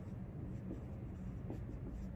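Dry-erase marker writing a word on a whiteboard: faint short strokes of the tip across the board.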